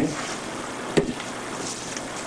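A single sharp knock about a second in as the drill-mounted paint mixer is lifted out of the paint can, over a steady background hiss.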